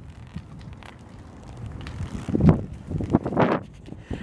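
Hyper Wave 26 full-suspension mountain bike rolling over a rough concrete deck, a low steady rumble of tyres and drivetrain, with wind buffeting the microphone. Two louder whooshes come in the second half.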